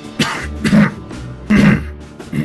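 A man coughing and clearing his throat, three short bursts, over background music.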